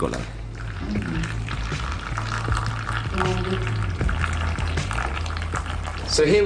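Background music with a low bass line, over a steady crackling hiss of thick carmine dye solution poured and trickling through a paper filter.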